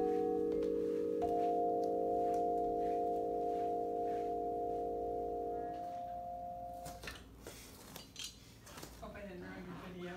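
Vibraphone notes from red yarn mallets holding a chord, with a higher note struck about a second in. The notes are cut off together about six to seven seconds in, then a few light knocks of mallets being set down on the bars.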